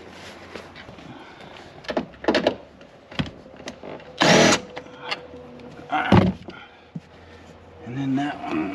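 Car interior trim being handled: a few clicks and knocks, a half-second scraping rustle about four seconds in, and a sharp thump about six seconds in.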